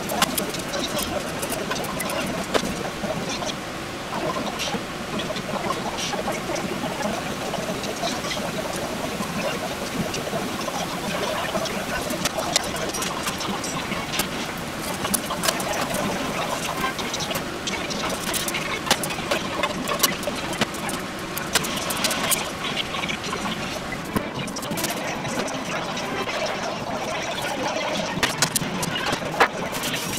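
Yakisoba noodles and pork with onion frying in two pans on a gas stove: a steady sizzle with scattered sharp clicks of utensils against the pans.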